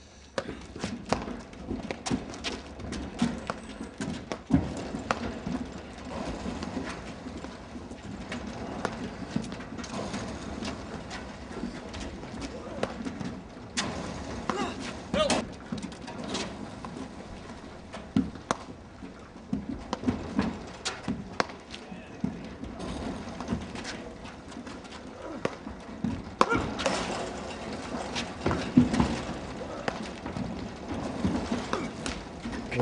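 Platform tennis rally: a stream of sharp knocks, irregular, roughly one or two a second, from the paddles striking the ball and the ball bouncing on the court.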